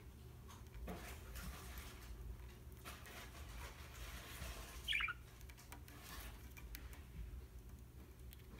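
Budgerigar giving one short, high chirp about five seconds in, among faint rustles and clicks as it moves on its perch, over a low steady room hum.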